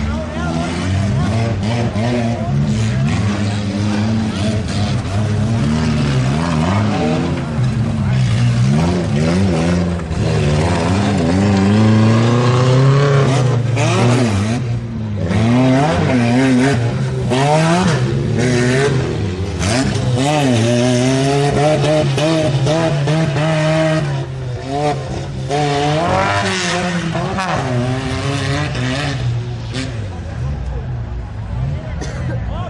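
Off-road competition 4x4's engine revving hard and unevenly as it is driven over a dirt course, its pitch climbing and falling repeatedly with short drops in level, with a voice over it.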